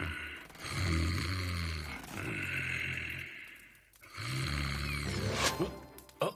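A man snoring in his sleep: three long, low, rasping snores a second or so apart, followed near the end by a short sharp sound.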